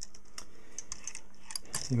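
Light, irregular clicking from a homemade Hipp-toggle pendulum movement as the pendulum swings, its brass toggle tapping over the dog.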